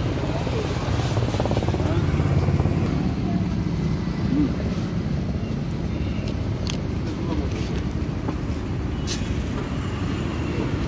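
Steady low rumble of street traffic, with faint indistinct voices.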